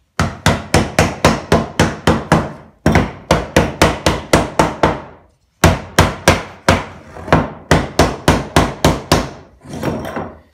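Mallet rapidly tapping the edge of a wooden drawer box to seat its joints during a dry fit: sharp knocks, about four a second, in three runs with short pauses, then a softer knock and scrape near the end as the box is set down.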